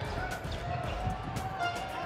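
Basketball arena ambience: crowd noise under a faint steady tone, with a basketball being dribbled on the hardwood court as a series of short bounces.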